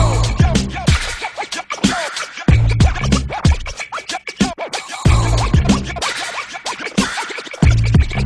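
DJ turntable scratching over a hip hop beat. Heavy bass notes hit about every two and a half seconds.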